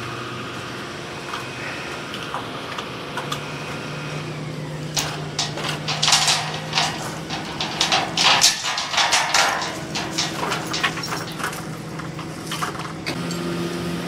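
Excavator engine running steadily, with a run of metal clinks and rattles from about five seconds in as the lifting chain is worked loose from the steel floor beam.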